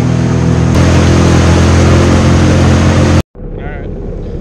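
Jet ski engine running at speed, with heavy wind and water noise on the microphone. The engine note shifts about a second in. Near the end the sound cuts off abruptly and comes back as a quieter engine.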